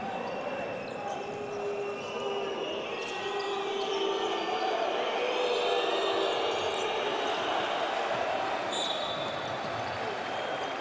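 A basketball being dribbled on a hardwood court, with shoes squeaking on the floor and players' voices echoing in the arena hall.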